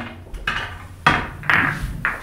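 Pool balls clacking against one another as they are gathered by hand: a few sharp clacks, the loudest just past a second in and another about half a second later.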